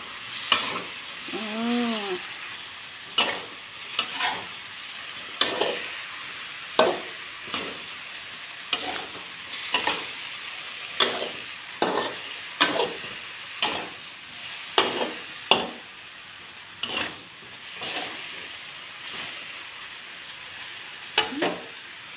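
Metal spatula scraping and clanking against a metal wok in irregular strokes, roughly one a second, over the steady sizzle of a stir-fry in hot oil.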